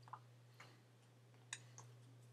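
Near silence: a steady low electrical hum with four faint, sharp clicks.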